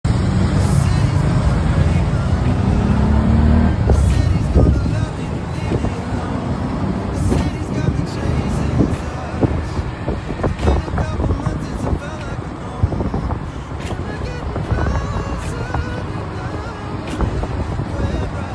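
Motorized tricycle's motorcycle engine running as it rides through traffic, loudest in the first four to five seconds, with its pitch rising about three seconds in as it speeds up. Music plays alongside.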